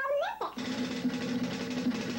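A high, sped-up 'chipmunk' voice gives a short 'ooh' that rises and falls in pitch. About half a second in, a fast, continuous clatter of manual typewriter keys follows.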